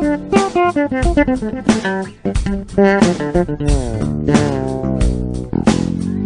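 Electric bass guitar and nylon-string classical guitar playing an instrumental tune together: a run of quick plucked notes, with falling, sliding notes about halfway through.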